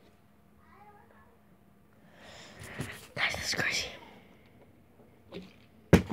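A person's voice, low and breathy, close to the microphone, with a faint higher sound about a second in and a sharp knock just before the end.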